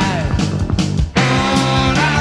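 Jazz-rock band music with a dense, full band sound. A note slides down in pitch at the start, the band drops out briefly just after a second in, then comes back on long held notes.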